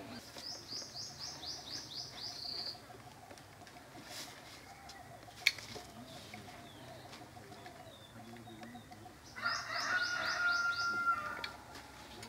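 A small bird singing two phrases of quick, high, repeated down-slurred notes, about nine notes each, one at the start and one about nine seconds in. A single sharp click falls in between.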